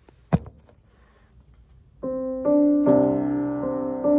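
A single sharp knock, then about two seconds in a piano starts playing sustained chords that change twice and grow louder: the opening of a worship song.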